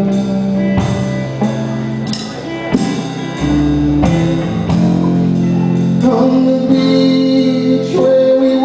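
A live band playing a song on electric guitars: strummed chords that change every second or so, over low bass notes.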